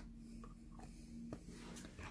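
Faint handling noise of small objects: a few soft scratchy rustles and a small click about a second and a half in, over a faint steady low hum.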